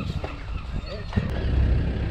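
A vehicle engine starts about a second in and settles into a steady low rumble, with voices briefly before it.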